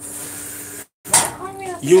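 A steady hiss that cuts out to complete silence just under a second in, then picks up again with voices.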